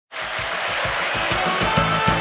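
Instrumental opening of a Tamil film song, starting abruptly: a dense wash of music over a steady low beat, with held melodic notes coming in near the end.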